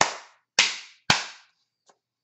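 Three sharp hand smacks about half a second apart, from the hands striking during emphatic sign language, each followed by a short ring of small-room echo.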